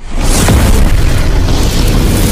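Explosion sound effect in an animated logo intro: a sudden loud boom that sets in right at the start and rumbles on with a heavy low end, over music.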